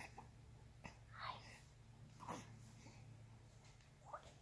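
Near silence over a low steady hum, with a few faint breaths and soft clicks.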